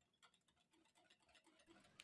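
Near silence with very faint, rapid ticking: a wire whisk striking the sides of a glass bowl while stirring thick cake batter.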